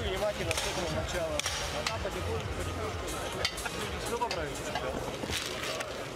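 A man's voice talking close up to a boxer in his corner between rounds, over the chatter of an arena crowd, with a few sharp clicks. Someone laughs about three seconds in.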